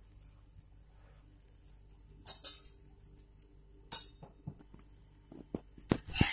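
Paratha frying on an iron tawa in hot ghee: a faint background with a few short sizzling crackles and spits of ghee. Near the end come a few light clicks, like a metal spatula touching the pan before the paratha is turned.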